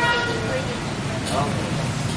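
Street traffic: vehicle engines running steadily, with a brief car-horn toot right at the start and background voices.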